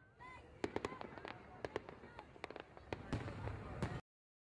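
Fireworks: a couple of short whistles at the start, then a dense run of sharp cracks and pops that cuts off suddenly at the end.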